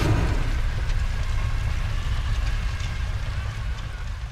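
Sound-design rumble for a fiery logo outro: a deep steady rumble with a hissing, lightly crackling layer on top and a few faint ticks, slowly fading away.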